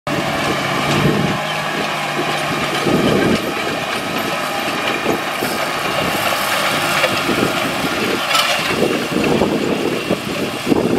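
John Deere 8R tractor's six-cylinder diesel engine running steadily under load as it passes, pulling a planter across the field.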